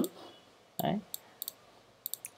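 A few sharp computer mouse clicks, two of them in quick succession, as the on-screen stock chart is worked.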